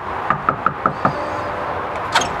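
Someone knocking on a door: five quick knocks in about a second, near the start.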